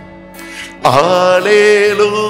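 A man sings a devotional worship song over a steady held accompaniment chord. His voice comes in loudly just under a second in and holds a long note with vibrato.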